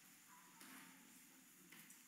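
Near silence: faint room tone with a light hiss.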